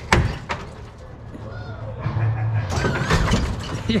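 Oldsmobile Cutlass lowrider's hydraulic suspension working: a sharp clack at the start and another about half a second later, then a steady low hum from about two seconds in as the car is raised.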